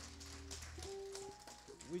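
Church organ softly holding sustained chords; the low bass notes drop out about a second in while higher notes continue.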